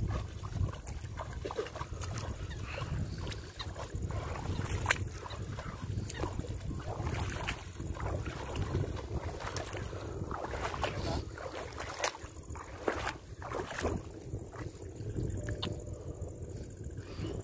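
Legs wading through shallow water, sloshing and splashing at irregular steps, over a steady low rumble of wind on the microphone.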